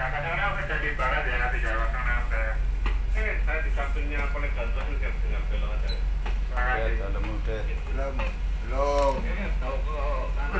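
Indistinct talking over the steady low hum of the tugboat's engines.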